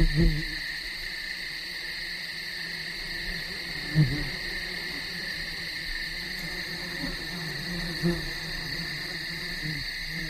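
A low voice hums a few short 'mm-hmm' sounds, spaced seconds apart, over a steady high hiss.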